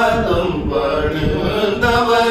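Two men singing a Carnatic song in raga Shanmukhapriya together, holding long vowel notes that slide from one pitch to the next, with a new held note starting near the end, over a steady low drone.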